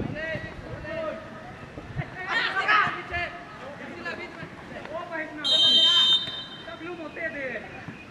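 Outdoor football match: players and onlookers shouting, with a referee's whistle blown once in a single high, steady blast of just under a second, about five and a half seconds in, the loudest sound.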